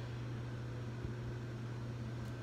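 Steady low hum with a faint even hiss: quiet room tone, with no distinct event.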